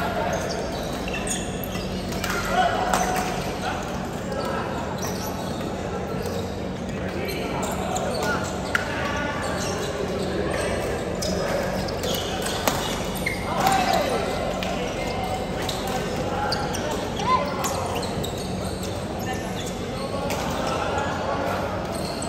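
Badminton play echoing in a large indoor hall: repeated sharp racket hits on the shuttlecock, a few short squeaks of court shoes on the floor, and a background hubbub of players' voices.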